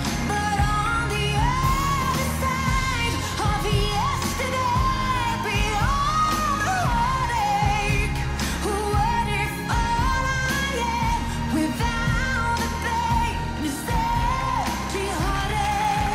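A woman singing a pop song live with a band behind her: piano, a string section and a steady bass line. The voice carries a held, gliding melody over the accompaniment without a break.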